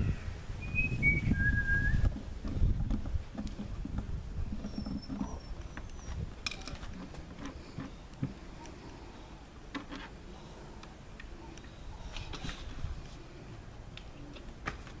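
A small bird gives a few short, high chirps, one group falling in pitch about a second in and a higher group around five seconds. Under them there is a low rumble over the first few seconds and a handful of light clicks.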